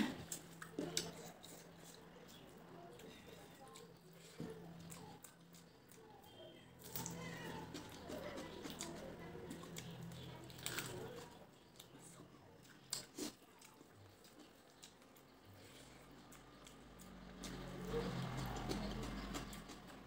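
Quiet eating sounds: chewing and wet mouth noises as rice and fish are eaten by hand, with occasional small clicks. A faint steady hum runs underneath.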